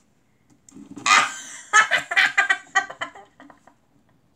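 A girl's high-pitched laughter: a burst about a second in that breaks into a quick run of giggles, about five a second, fading out after about two seconds.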